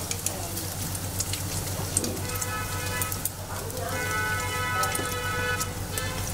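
Strips of batter-style youtiao frying in a wide pan of hot oil: a continuous dense crackling sizzle over a low steady hum. A held, pitched tone rises in the background twice, about two seconds in and again from about four seconds to near the end.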